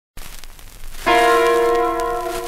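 A vinyl 45 rpm R&B single starting to play: a moment of faint surface crackle, then about a second in the band opens on a loud held chord.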